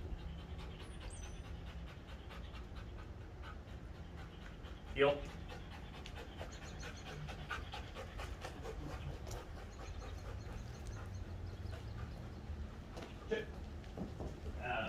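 A dog panting rapidly and steadily, over a steady low hum.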